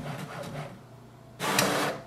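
HP Smart Tank 5107 inkjet printer running a copy job: the print mechanism whirs with fast, fine ticking, dies down after about two-thirds of a second, then gives a louder burst of noise over the last half second as the printed page is fed out into the tray.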